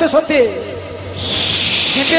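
A man's voice close on a microphone: a short falling cry, then a loud drawn-out hissing 'shhh' of nearly a second near the end, a vocal sound effect in the telling of a thunderbolt and fire falling.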